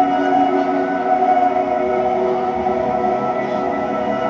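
A live band playing a slow ambient intro: layered, sustained droning tones with no beat.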